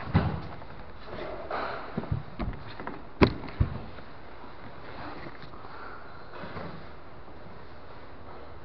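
Bodies and bare feet thumping and scuffing on a foam mat during jiu-jitsu grappling, with a few dull thumps in the first four seconds and one sharp knock, the loudest, about three seconds in.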